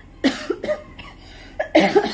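A woman coughing: a short cough about a quarter second in and a louder one near the end.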